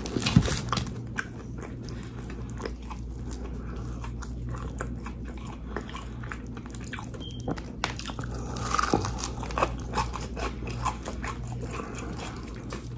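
Close-miked chewing and crunching of crispy fried chicken, with quick crackles of breading as the chicken is pulled apart by hand. A louder run of crunches comes about nine seconds in.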